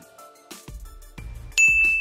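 Quiet outro music with a soft beat. About one and a half seconds in, a single bright bell-like ding sound effect rings out and fades away.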